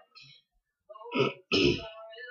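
A woman coughing twice to clear her throat, two short coughs about a second in, the second louder.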